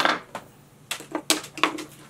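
Fly-tying tools clicking and tapping lightly against the metal vise and hook while the thread is whip finished behind the fly's eyes. About half a dozen sharp, irregular clicks, the loudest right at the start.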